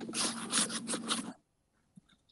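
Scraping, rustling noise picked up by a video-call microphone, with a faint steady hum under it; it cuts off abruptly to silence a little over a second in.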